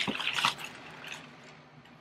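Plastic mailer bag crinkling and rustling as it is handled and opened. The rustling is loudest in the first half second, then fades to faint rustles.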